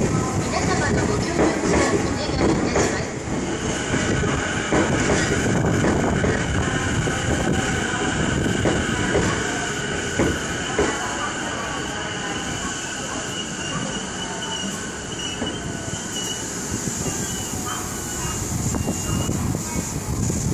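JR East E233-8000 series electric train running past and slowing as it arrives at a platform, with wheel knocks over the rail joints in the first few seconds. A steady high-pitched squeal joins about four seconds in and holds while the train brakes.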